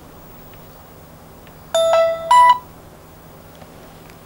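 Two-note electronic chime from a mobile phone, a lower tone followed by a higher one, lasting under a second, about two seconds in.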